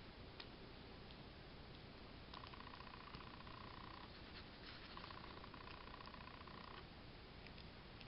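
Near silence, with faint small clicks and two stretches of faint rapid rasping as a crochet hook lifts yarn loops over the metal pins of a spool knitter (tricotin).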